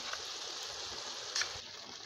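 Meat and tomato stew simmering in an aluminium pot with a steady hiss while a wooden spoon stirs it, with a single tap about one and a half seconds in.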